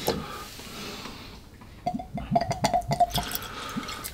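Whisky poured from a glass bottle into a nosing glass: a quick run of glugs lasting about a second and a half, starting about two seconds in.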